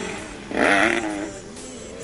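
Motocross bike engine: its note falls away, then a short sharp rev about half a second in that rises and drops back.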